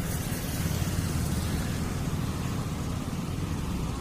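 Steady low rumble of road traffic, a motor vehicle running nearby.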